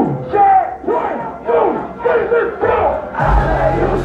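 Concert crowd shouting along in unison in repeated rhythmic phrases, then a heavy bass beat from the PA comes in about three seconds in.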